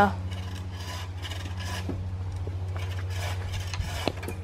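Hand saw cutting through a wooden pole overhead, in quick, even back-and-forth strokes, about three a second.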